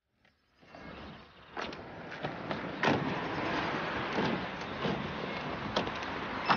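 A car moving, a steady rumble and hiss that fades in about half a second in and grows louder, with a few sharp knocks.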